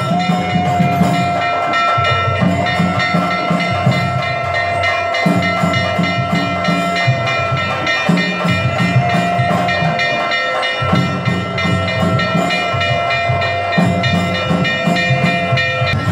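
Temple ritual music: a wind instrument holds one long, steady note with slight wavers, over rhythmic drumming that pauses briefly now and then.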